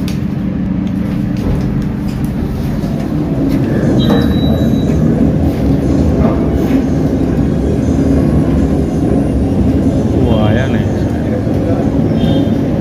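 Gangtok Ropeway cable car station machinery running with a steady low rumble, under people's voices; the rumble grows louder about four seconds in.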